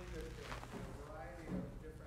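Faint, distant speech: an audience member asking a question away from the microphone, too quiet for the words to be made out.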